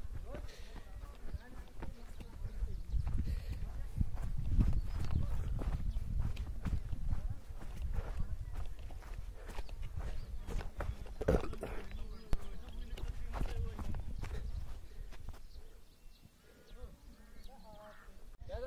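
Footsteps and handling knocks from walking downhill over grass, with wind rumbling on the microphone. Faint voices come in now and then, about 11 seconds in and again near the end.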